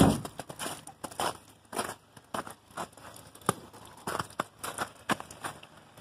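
Footsteps crunching through snow, irregular crunches about two a second, with a loud knock at the very start.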